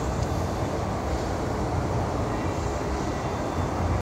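Steady low rumble of outdoor background noise, even in level throughout.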